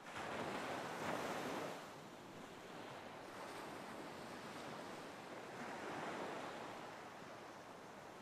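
Ocean surf washing on a shore, quiet and swelling in and out: a louder wash in the first two seconds, another about six seconds in.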